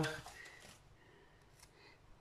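Near silence, with faint rustles and light clicks of paper as a sticker is peeled from its sheet and pressed onto a card.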